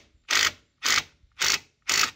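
Cordless impact wrench hammering on a wheel stud at a car's hub in four short trigger pulls, about two a second.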